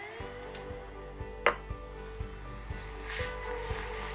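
Cream sizzling and bubbling as it is poured into hot melted sugar and syrup in a steel saucepan, the stage where caramel sauce is made. There is one sharp metal clink about one and a half seconds in.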